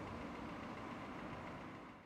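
Steady outdoor street ambience dominated by distant traffic noise, fading out near the end.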